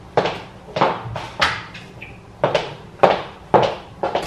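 Footsteps of shoes on a hardwood floor, about two steps a second, each a sharp knock, with a short break in the middle.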